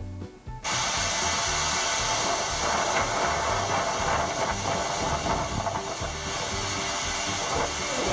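Gullfoss waterfall's white water rushing, a steady hiss-like wash of falling water that cuts in suddenly about half a second in. Background music continues underneath.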